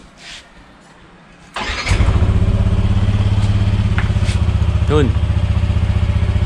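Yamaha NMAX 155 scooter's single-cylinder four-stroke engine started on the electric starter about one and a half seconds in, then idling steadily.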